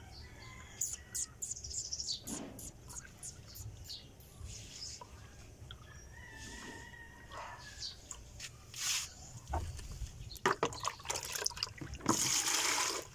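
Water splashing and sloshing as a plastic dipper scoops from a bucket, starting about ten seconds in. Before that come scattered light clicks and taps.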